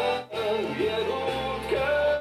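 A recorded pop song playing: a male lead voice singing with band accompaniment and a steady bass line, the voice sliding and dipping in pitch between notes. The music drops out briefly about a quarter second in.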